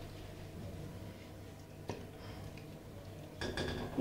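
Faint sounds of hands washing water lettuce in a plastic basin of water, with one light knock against the basin about two seconds in.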